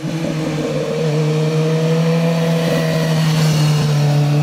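BMW S1000R's inline-four engine running at steady revs as the motorcycle rides through a bend past the camera, one even note that sinks a little in the first second and then holds level.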